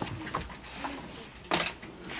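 Hard plastic stroller parts being handled: a few faint clicks, then a louder sharp knock about one and a half seconds in.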